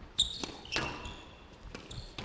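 Squash ball being hit by rackets and off the court walls: a sharp crack about a fifth of a second in, then a few more hits, along with short high squeaks of court shoes on the wooden floor.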